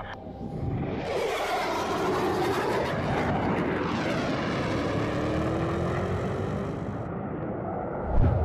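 Jet aircraft flying past: a loud rushing engine noise with a sweeping, shifting quality. It comes in about a second in and cuts off sharply near the end.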